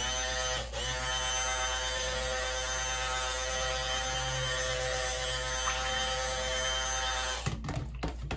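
Hand-held electric stick blender running steadily with a whirring hum while blending goat's milk lotion in a stainless steel pot. It dips briefly just under a second in and switches off about seven and a half seconds in.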